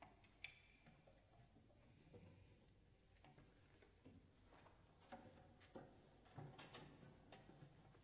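Near silence: quiet room tone with faint scattered clicks and small knocks, more of them in the second half, as the ensemble settles before playing.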